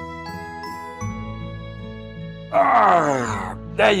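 Soft background music with tinkling, bell-like notes. Near the end a voice makes a loud, long exclamation that falls in pitch, then a shorter one with the word "there".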